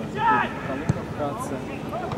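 A man's voice with a short, loud call early on, then a single sharp knock about a second in, over a steady outdoor background.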